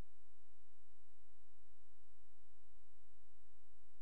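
Steady electronic hum through the hall's sound system: a held tone with a stack of fainter steady tones above it and a low buzzing pulse beneath. It is interference that comes as the laptop's video feed to the projector breaks down.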